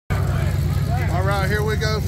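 Car engine idling with a steady low rumble, with a voice speaking over it from about half a second in.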